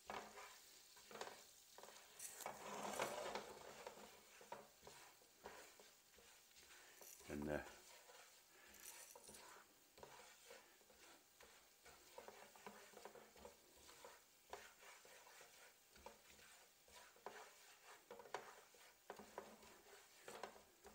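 Faint scraping and tapping of a utensil stirring a butter-and-flour roux in a frying pan, with a light sizzle as the flour cooks in the melted butter. The stirring is a little louder about two to four seconds in.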